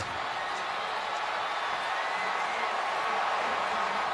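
Large stadium crowd cheering steadily as a touchdown is scored.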